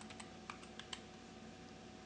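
Computer keyboard keys tapped in a quick run of faint clicks during the first second as a password is typed, then only a low hum.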